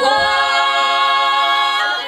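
A female folk ensemble of five voices singing a Russian folk song a cappella, holding one long, loud chord in close harmony that breaks off briefly near the end as the next phrase starts.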